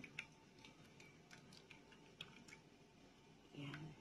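Faint scattered small clicks and ticks while thick white rice-flour batter is poured into a metal steaming pan, with a short murmur of a voice near the end.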